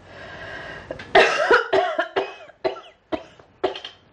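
A sick woman's coughing fit: a breathy intake, then about six or seven short coughs starting about a second in, the first the loudest and the rest trailing off.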